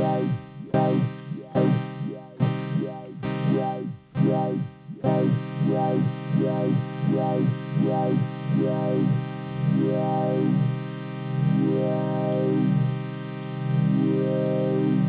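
Software modular synth patch: two oscillators through a resonant filter play a low drone whose filter sweeps up and down over and over. For about the first five seconds the sound comes as short repeated notes; then it holds, and the sweeps slow from a few a second to about one every second and a half as the LFO driving them is turned down.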